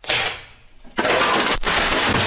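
Wooden furniture crashing down: a sudden bang, then about a second later a loud, longer clatter of flat-pack wooden panels, a drawer and a stool breaking apart and landing on the floor as a toppled coat stand knocks over a small vanity table.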